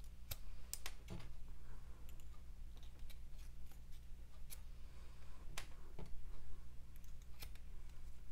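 Scissors snipping through waxed candle wick, a series of short sharp snips at irregular intervals over a low steady hum.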